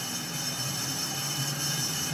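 Impact-test rig running with a steady mechanical whirring hum and hiss, slowly growing louder.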